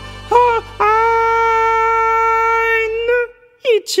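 A woman sings solo over a soft sustained accompaniment: a couple of short notes, then one long high note held for about two seconds. The voice and the accompaniment stop together near the end.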